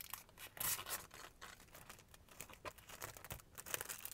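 Thin protective plastic film being peeled off the clear window of a transparent face mask: faint, irregular crackling, loudest about half a second in.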